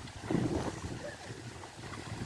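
Water sloshing and splashing as a bullock and a man wade through a canal, with wind buffeting the microphone; the splashing swells louder about half a second in.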